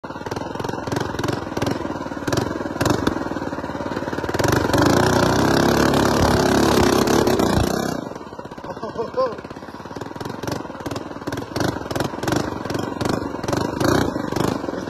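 Small engine of a custom mini bike running while being ridden over a rough trail, building to a loud sustained pull about four seconds in and easing off about eight seconds in, with short knocks and rattles throughout.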